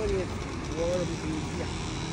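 Outdoor promenade ambience: a few short snatches of other people's talk, near the start and about a second in, over a steady low rumble.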